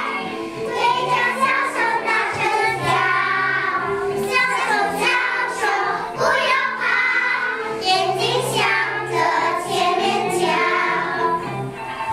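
A group of young children singing together in unison, with instrumental music playing along underneath.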